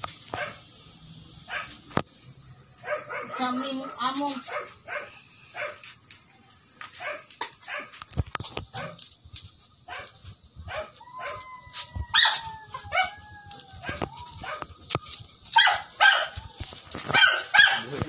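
A dog barking again and again in short barks.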